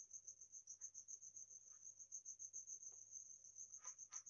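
Near silence with a steady, high-pitched, rapidly pulsing insect trill throughout, and the faint scratching of a ballpoint pen writing on paper.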